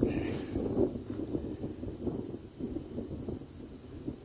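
Wind buffeting the microphone: a low, uneven rumble, with a brief rustle near the start.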